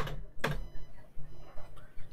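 Two sharp computer-keyboard key clicks, one at the start and one about half a second in, pressing Enter to boot Linux from the LILO menu, over a low steady hum.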